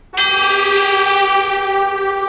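Opera orchestra cutting in with a loud sustained chord just after the start, brass to the fore, held steady without a break.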